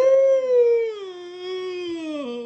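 A character's voice giving one long, drawn-out whine that slides slowly down in pitch, like a sleepy howl, heard through a screen's speaker.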